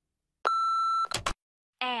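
Voicemail recording beep: a single steady electronic tone lasting about half a second, followed by a short click, just before a recorded message begins.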